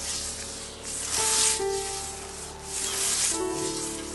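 Scythe blade cutting through long grass: two swishing strokes about a second and a half apart, each a rising and falling hiss, over soft background music.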